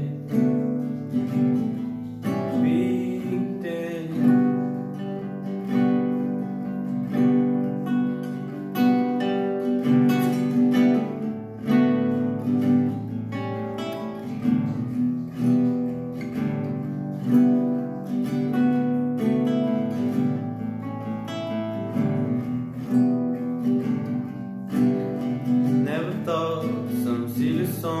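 Acoustic guitar played solo, a steady chord pattern with evenly repeating note attacks.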